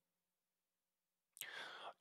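Near silence, then a faint breath taken in the last half second before the man speaks again.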